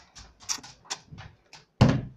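Light plastic clicks and taps as a LEGO minifigure is moved over a LEGO baseplate, about three a second, then one loud thump near the end.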